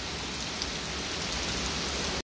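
Heavy rain falling steadily on a flooded yard, a constant hiss of downpour.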